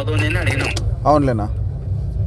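Recorded phone conversation: a man speaking Telugu in short phrases, with a pause in the second half, over a steady low hum.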